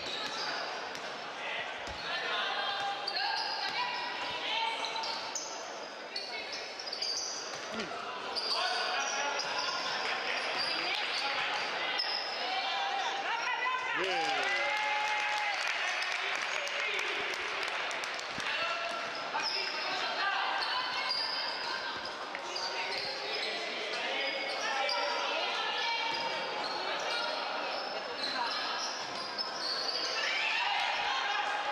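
Basketball game in a sports hall: the ball bouncing, sneakers squeaking on the court in many short high squeals, and players and spectators calling out.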